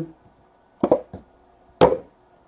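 A trading card box and plastic card holders being handled on a table: three quick light knocks just under a second in, then one sharper clack near the end.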